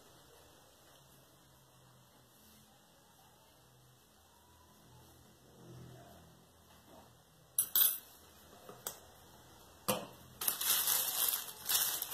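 A few sharp clicks of small objects on a hard countertop, then a plastic bag crinkling loudly as it is handled in the last couple of seconds.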